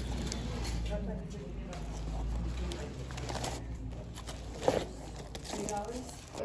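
Laminated cardboard die-cut decorations being flipped through and handled, giving soft rustles and several short clicks, the sharpest a little before the end, over faint talking and a steady low rumble.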